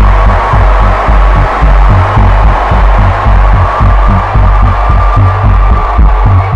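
Loud dance music with a heavy, pulsing bass beat.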